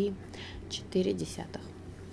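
Speech: brief, partly whispered fragments of a woman's voice, with a low steady hum underneath.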